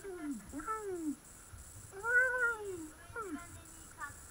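A kitten meowing about four times, each call dropping in pitch. The longest and loudest is an arched meow about halfway through.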